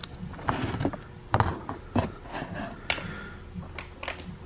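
Wood-mounted rubber stamps knocking and clacking against one another as they are handled in a cardboard box: a few scattered knocks, the loudest about a second and a half and two seconds in.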